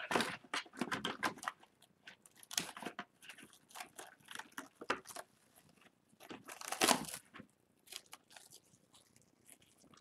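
Plastic cling film crinkling and tearing as a piece is pulled off and pressed around a small doll, in irregular crackles with the loudest rustle about seven seconds in.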